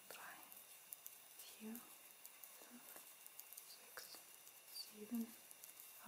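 Near silence, with a woman softly counting stitches under her breath in a few short murmurs, and faint light clicks of knitting needles as she purls.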